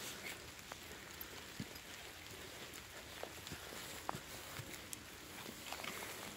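Faint footsteps with scattered small rustles and crackles on dry fallen leaves.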